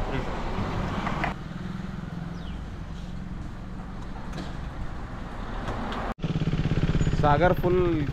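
Voices over a low steady hum, then, after a sudden cut, a KTM RC motorcycle's single-cylinder engine idling with an even low pulse, a man talking over it near the end.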